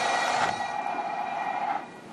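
Bagpipes playing a sustained, steady note over their drones. The sound cuts off sharply near the end.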